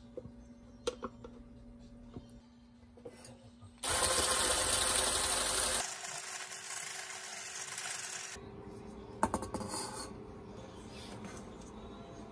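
Hand-held electric mixer with a whisk attachment whipping a white mixture in a stainless steel bowl. It comes on loudly about four seconds in, runs a little quieter from about six seconds and stops around eight seconds, with light spatula taps and scraping on the bowl before and after.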